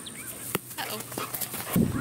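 Dogs running up over the dirt, their paws on the ground, with small birds chirping in the background; a sharp click about half a second in, and louder scuffling as they arrive near the end.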